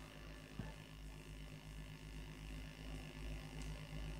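Faint, steady low electrical hum from the stage sound system, with a soft click about half a second in.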